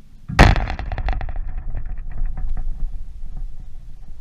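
A loud bang about half a second in as a tennis ball strikes the chain-link court fence close by, followed by rapid metallic rattling of the fence that dies away over about two seconds.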